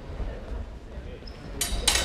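Steel training longswords clashing blade on blade: two sharp, ringing metal strikes in quick succession near the end.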